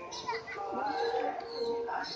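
A sheep bleating: one long wavering call of about a second, with people's voices around it.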